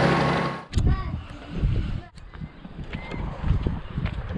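A steady mechanical hum stops abruptly under a second in. Gusty wind then buffets the microphone as an uneven low rumble, with a few faint fragments of voices.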